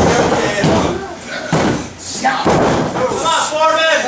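Several loud thuds on a wrestling ring's canvas during a pin, with voices shouting near the end.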